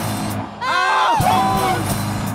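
Live rock band of electric guitar, bass guitar and drums playing. About half a second in the sound dips briefly, then loud sliding, bending pitched notes come in over the band.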